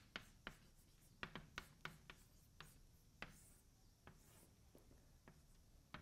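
Chalk writing on a blackboard: faint, quick taps and scratches, most densely in the first three seconds, then a few scattered ones.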